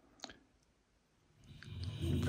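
Quiet room with a single short, sharp click about a quarter of a second in; near the end a voice starts to come in.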